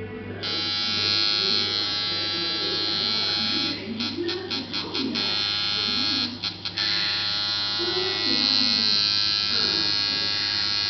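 Handmade twin-coil tattoo machine running with a steady electric buzz, starting about half a second in. The buzz cuts in and out several times in quick succession around the middle, and again briefly a little later.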